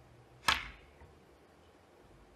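A snooker shot: one sharp click as cue and ball make contact about half a second in, followed by a much fainter click about half a second later.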